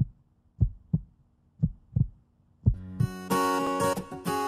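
Low double thumps like a heartbeat, about one pair a second, three pairs. About three seconds in, plucked acoustic guitar music starts.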